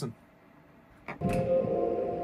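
About a second of quiet, then a click or two from the computer keyboard, and a slow ambient electronic track with held chords starts playing back through the studio speakers.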